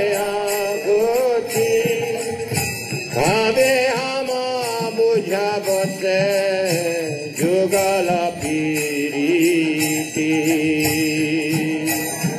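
Devotional kirtan: a voice singing a chanted melody over a steady beat of small brass hand cymbals (karatalas).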